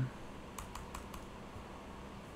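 Computer keyboard keys pressed about six times in quick succession, a short run of typing strokes about half a second in, as a line of code is deleted.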